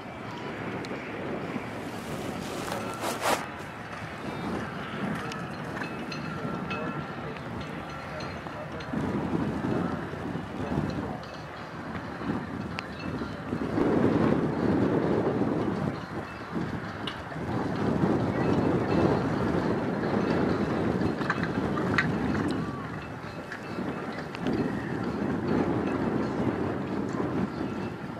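Outdoor ambience of wind on the microphone with indistinct voices in the background, swelling louder several times in the second half. There is one sharp knock about three seconds in.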